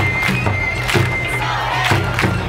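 Bon odori ondo music played loud, with drum strikes every half second to a second, a held high tone and a steady low bass line. Festival crowd noise sits underneath.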